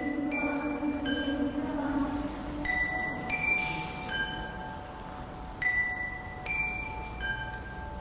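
Chimes struck one note at a time in a slow tune, each note ringing and fading, about eight notes in all. A low held tone sounds under the first three seconds.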